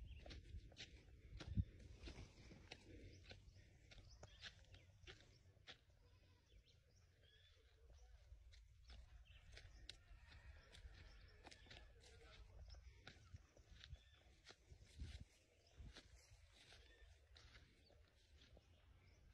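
Near silence: faint outdoor ambience, a low rumble with scattered soft clicks and crackles.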